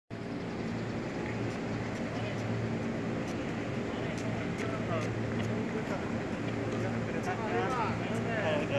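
Railway station platform ambience: a steady low hum with faint distant voices, which become clearer near the end, and a few light clicks.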